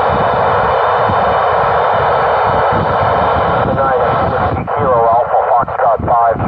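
Satellite FM downlink from TEVEL-3 received on an Icom ID-4100A, heard through the radio's speaker: a steady, band-limited hiss. About four seconds in, garbled, warbling voices break through, from stations transmitting over one another on the satellite, a stomp fest.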